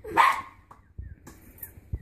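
A dog barking once, then whimpering faintly.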